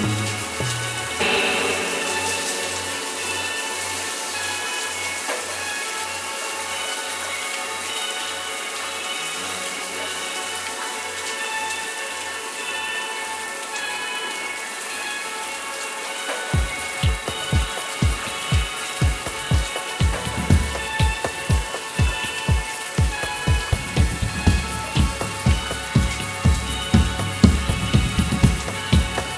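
Indie pop band playing an instrumental passage live: held synth and guitar tones over a low bass note pulsing about twice a second. About sixteen seconds in, the drums enter with a steady kick-drum beat and the music grows louder.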